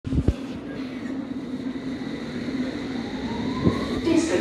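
London Underground S Stock train pulling away, its electric traction motors giving a rising whine from about three seconds in over a steady hum. Two short knocks, one near the start and one near the end.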